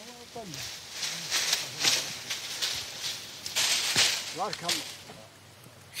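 Dry date-palm fronds rustling and scraping in several bursts as a climber works among them at the top of the tree, with a sharp snap about four seconds in. A few short bits of a man's voice come in between.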